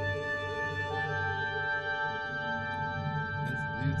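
Playback of an orchestral mix: sustained chords with a change of harmony about a second in, and a few light note attacks near the end. A close-miked classical piano is placed in a hall reverb so that it sits inside the orchestra.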